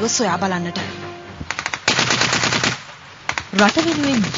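Automatic gunfire: a few single shots, then a long rapid burst about two seconds in, and a few more shots shortly after.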